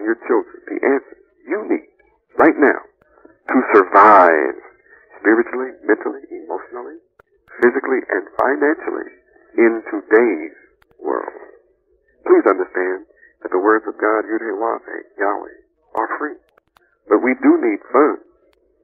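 Speech only: a voice talking in short phrases, thin and narrow-sounding, like a voice over a radio.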